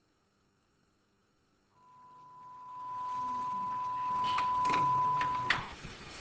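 A steady single-pitched test tone of the kind recorded at the head of a videotape. It starts about two seconds in and cuts off near the end, over a swelling hiss with a few sharp clicks in its last second.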